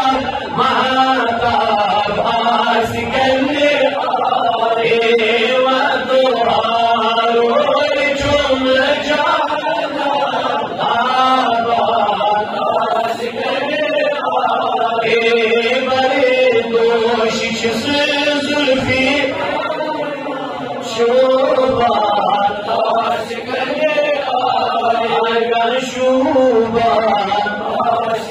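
A man's voice chanting a Kashmiri naat, a devotional poem in praise of the Prophet, unaccompanied into a microphone, in long melismatic lines that rise and fall in pitch.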